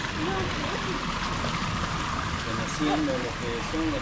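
Spring water pouring steadily from pipes into a concrete channel, a continuous splashing rush, with faint voices behind it.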